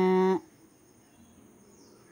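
A woman's voice holding a drawn-out hesitation vowel on one steady pitch, ending just under half a second in, followed by quiet room tone.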